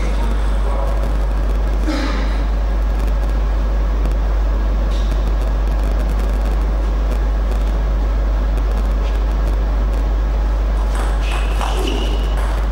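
Steady low hum, the loudest sound, with faint voices about two seconds in and a table tennis ball being hit a few times near the end.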